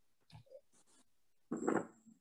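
Faint, scattered small sounds over a video-call line, with one short voice-like call about one and a half seconds in.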